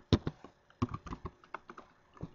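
Computer keyboard typing: a quick, uneven run of key clicks, about a dozen, the loudest just after the start.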